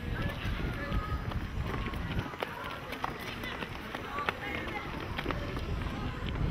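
Indistinct chatter of many children walking in a line, with scattered footsteps on dry ground and a low rumble of wind on the microphone.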